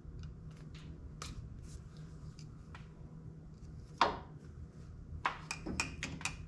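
Small scattered clicks and scrapes of a hand pick tool prying at an old crankshaft rear main seal, with a sharper click about four seconds in, over a low steady hum.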